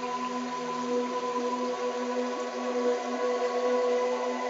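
Synthesized brainwave-entrainment tones built on a 396 Hz base with a 15 Hz monaural beat and isochronic pulsing: several steady, held electronic tones layered over a faint hiss.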